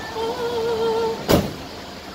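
A drawn-out, wavering vocal call lasting about a second, then the minivan's sliding side door shuts with a single loud slam.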